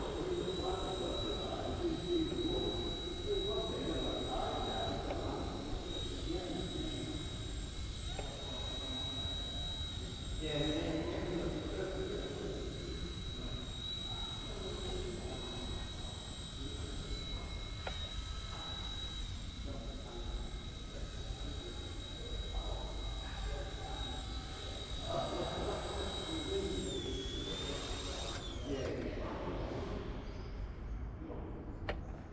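Eachine E129 micro RC helicopter whining at a steady high pitch as it flies. Near the end the whine dips, rises briefly, then falls away and stops as the helicopter lands and spools down. Voices are heard in the background.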